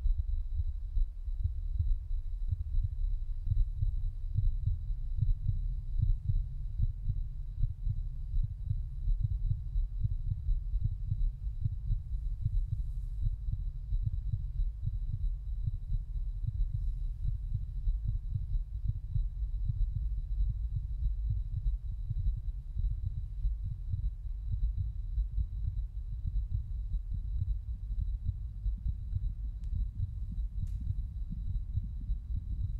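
A deep, low rumble in the performance's electronic score, flickering constantly in level, with a thin, steady high tone above it.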